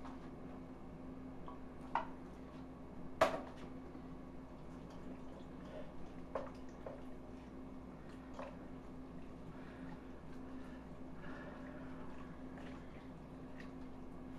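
Wooden spatula stirring diced peppers and onions into beans and tomatoes in a cast iron Dutch oven: quiet wet squishing, with a few sharp taps of the spatula against the pot, the loudest about three seconds in. A faint steady hum runs underneath.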